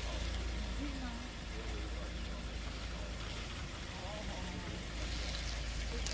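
A steady low rumble, like an idling vehicle engine, with faint, indistinct voices murmuring over it.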